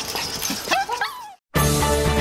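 A small long-haired dog gives a couple of short, high cries that rise and fall in pitch. After a brief dead gap, music starts suddenly about one and a half seconds in.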